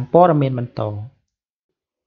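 A narrating voice speaking for about a second, then cutting off suddenly into dead silence.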